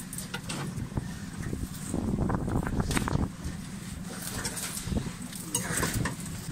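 Steady low rumble on board a small boat, with rustling and knocks from a wet fishing net and gear being handled, heaviest about two to three seconds in.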